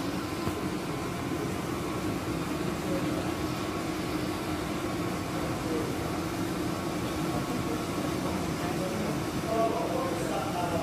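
Steady low mechanical hum with a few faint steady tones in it, with faint voices near the end.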